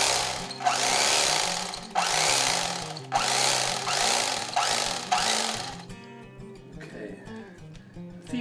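Electric fillet knife running through a lake perch, its reciprocating blades rasping loudly in repeated surges about once a second as they cut the meat off the backbone and ribs. The rasping stops about six seconds in, leaving a quieter steady motor hum.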